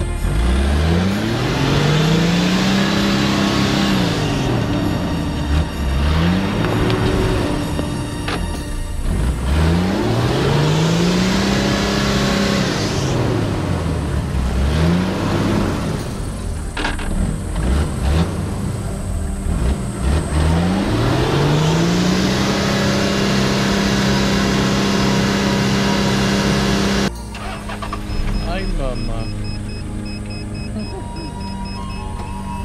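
A four-wheel-drive safari vehicle stuck in mud, its engine revving up and down over and over as the wheels spin in the mud trying to get free. The last rev is held for several seconds and then cuts off sharply near the end.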